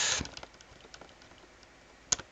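Faint computer-keyboard key clicks as a command is typed. A hissing noise at the start cuts off about a quarter second in.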